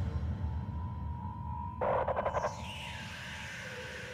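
Sparse, quiet passage of an industrial drum and bass track: a low rumble under a held synth tone, a short stuttering burst of rapid pulses about two seconds in, then a pitch falling from high to mid.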